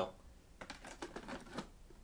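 Faint clicks and rustles of hands handling a rugged laptop and its removed DVD drive module, plastic parts knocking lightly.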